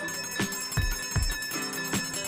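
Small brass hand bell (ghanti) rung steadily in Hindu puja worship, its ringing tones held continuously. Regular low thumps about two or three times a second run under it.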